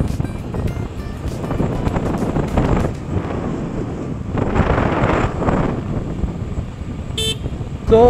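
Wind and road noise of a Suzuki Burgman 125 scooter being ridden, heard on the scooter-mounted microphone as a steady rush and rumble. A brief horn toot sounds about seven seconds in.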